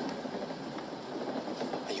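A pause in a film's dialogue, leaving the soundtrack's steady background noise, re-recorded from a computer speaker, with a man's voice starting again near the end.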